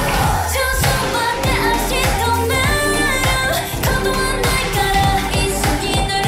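Pop song playing, with female group vocals singing over a steady beat and bass.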